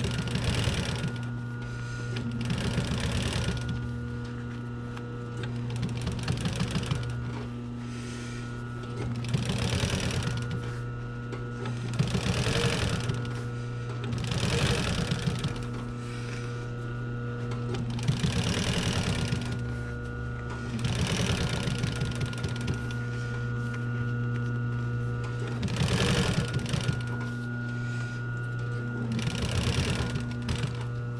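Pfaff industrial sewing machine stitching a piped leather seat-cover seam in short runs of about a second each, ten or so times, with pauses as the work is repositioned. Its motor hums steadily between the runs.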